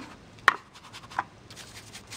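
Ink sponge dabbed onto a dye-ink pad: a sharp tap about half a second in and a lighter one a little after a second, then faint quick rubbing as the sponge starts working over the embossed cardstock.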